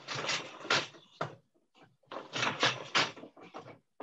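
Wooden four-shaft floor loom being worked: two bursts of clatter about two seconds apart, each a quick run of wooden knocks as the beater is swung against the cloth and the shafts shift with the treadles.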